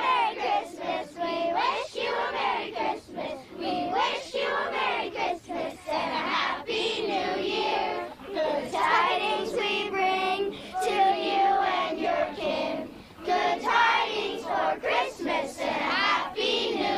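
Children's choir singing a song together, phrase after phrase with brief breaks for breath.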